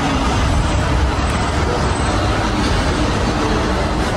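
Steady, loud background rumble of a large, crowded hall, with no distinct events.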